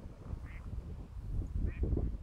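Ducks quacking on a pond, two short calls, about half a second in and near the end, over a low rumbling noise.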